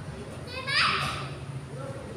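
A young child's high-pitched shout, about half a second in and lasting about half a second, over faint background voices.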